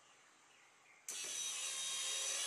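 Electric drive motor and toothed timing-belt drive of an automatic scrolling blackboard machine starting up about a second in, then running with a steady high-pitched whine as it moves the board into the blackboard position.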